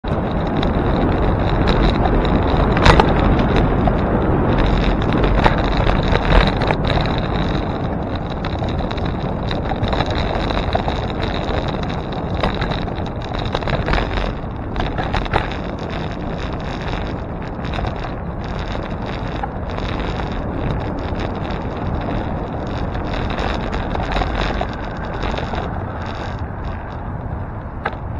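Wind rushing over a bike-mounted camera's microphone and tyre noise on the road while riding, with a few sharp knocks and rattles from bumps in the rough pavement.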